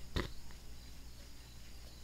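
Pause in speech: faint steady microphone hiss and low electrical hum, with one short click a fraction of a second in.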